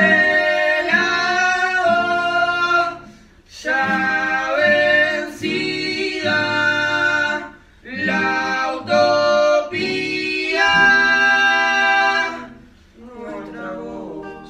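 Boys singing a murga song in long held notes, phrase by phrase, with short breaks between phrases; an acoustic guitar accompanies them.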